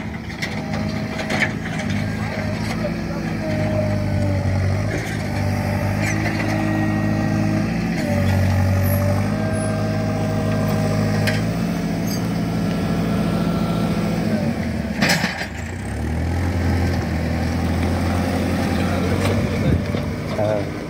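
Diesel engine of a backhoe loader running steadily, its pitch stepping up and down a few times, with a sharp knock about fifteen seconds in.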